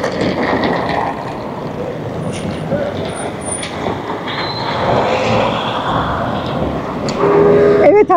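Busy street traffic noise: vehicles running and moving around a minibus station, with people's voices in the background.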